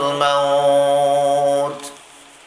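A man's voice chanting, holding one long, steady note for about a second and a half before breaking off near the end.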